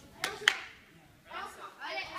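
Two sharp hand claps about a quarter second apart, the second louder, followed by voices talking in the hall.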